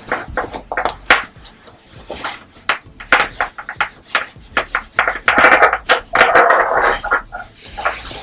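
Trouser fabric rustling and crumpling under the hands, with short sharp clicks and scrapes, as a belt is pushed through a sewn fabric channel. The rustling is densest and loudest about five to seven seconds in.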